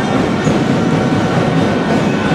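Packed basketball-hall crowd making a steady, loud din during play, with a brief high squeak of a shoe on the court about half a second in.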